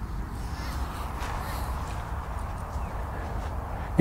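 Steady outdoor background noise with no distinct event standing out.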